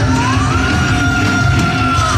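Heavy metal band playing live and loud, with one high lead note that slides up about half a second in and is then held.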